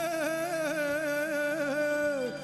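A male voice holding one long sung note with small ornamental pitch wavers, in the style of Balkan folk singing, over steady band accompaniment.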